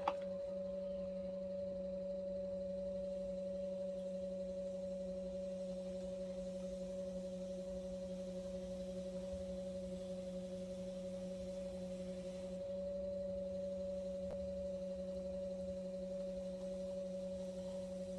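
Electric potter's wheel motor running at a steady speed: a constant hum made of a few steady tones.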